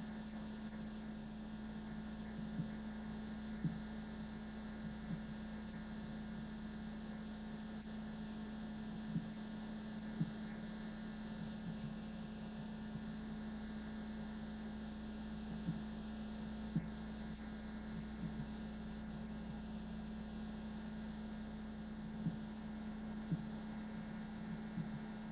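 Steady electrical hum on the audio track, with light hiss and occasional short clicks scattered through. No bells are ringing.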